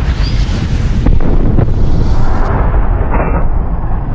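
Fiery explosion sound effect: a loud, continuous low rumble like a burning blast, with a few sharp cracks.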